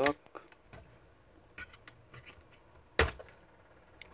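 Plastic clips of a laptop's case clicking as they are pried loose: a few light clicks, a quick run of clicks, then one loud sharp snap about three seconds in.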